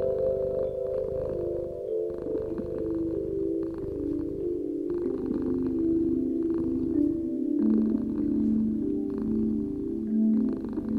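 Soft background music of sustained chime-like notes stepping slowly down in pitch, over a steady low rumble.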